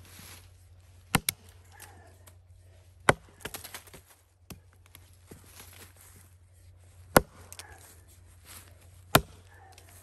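Axe chopping into a felled log: four sharp strikes spread about two seconds apart, the first one doubled by a quick second hit, with fainter knocks and rustles between the blows.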